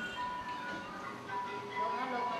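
Buddhist monks chanting together at a house blessing, the voices holding level, drawn-out notes with short breaks.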